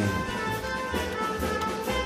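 A small live band playing: violin and saxophone hold sustained notes over a steady drum-kit beat.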